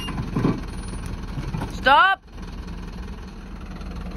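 Mercedes Vario 818 truck's diesel engine running steadily at low revs, a low hum, as the camper crawls down a steep, tilted bank.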